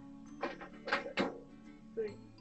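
Steel side panel of a desktop computer tower being unlatched and pulled off: a few clunks and scrapes of sheet metal, the loudest about a second in. Background music plays underneath.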